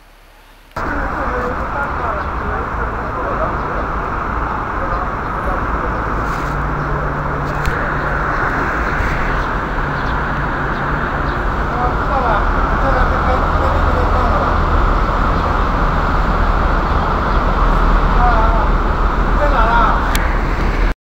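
Loud, steady street traffic noise with a few faint voices, cutting in abruptly about a second in and growing slightly louder toward the end.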